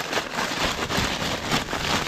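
Plastic zip-lock bag crinkling and rustling as it is handled, with a steady dense crackle throughout.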